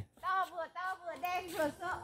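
Speech only: voices talking in short phrases, quieter than the close voices just around it, with no other sound standing out.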